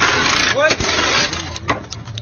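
Pneumatic wheel gun running in one burst of about a second and a half during a race motorcycle's pit-stop wheel change, with people shouting over it.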